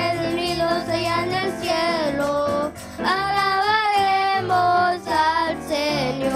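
Young girls singing a worship chorus into microphones over an electronic keyboard accompaniment, with long held notes and short breaths between phrases.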